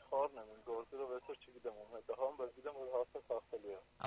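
Speech only: a person talking continuously, with brief pauses between phrases.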